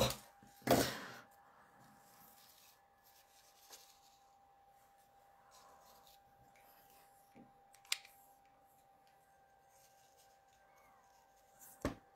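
Quiet paper-crafting handling: a short rustle under a second in, then a few faint taps and a sharper click about two thirds of the way through as a paper clock cut-out is handled and laid on a card, over a faint steady hum.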